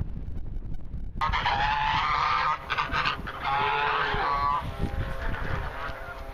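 Geese honking in several loud bursts, starting suddenly about a second in and dying down over the last second or so, over a low rumble of wind on the microphone.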